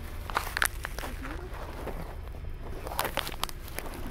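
Paper and plastic toy packaging handled and unfolded, giving a few short crackles and clicks, over the steady low rumble of a car's cabin.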